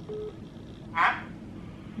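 Faint phone ringtone: a short steady electronic beep near the start. About a second in comes a brief hissing burst.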